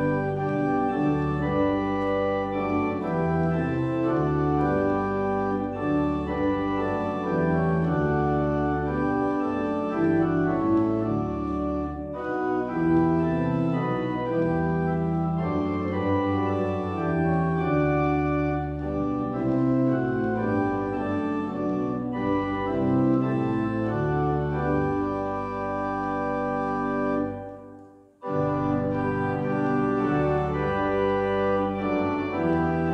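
Church organ playing a hymn tune in sustained chords. It breaks off briefly near the end, at the close of a verse, then starts again.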